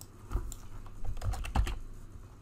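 Computer keyboard typing: a quick run of about eight keystrokes as a word is typed in.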